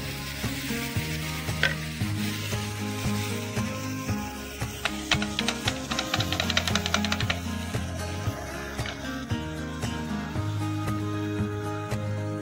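Besan and paneer batter sizzling in hot oil in a frying pan, with a wooden spatula scraping against the pan as it spreads the batter.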